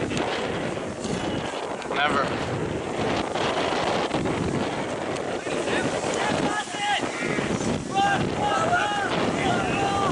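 Wind buffeting the microphone, with shouts and calls from rugby players on the field, about two seconds in and several more in the last few seconds.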